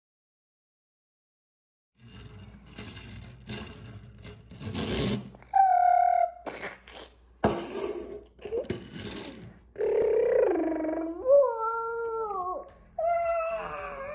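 A young child's wordless vocal noises: a short held note, then several long falling whoops, with scattered knocks and rustles before them. The sound begins about two seconds in, after silence.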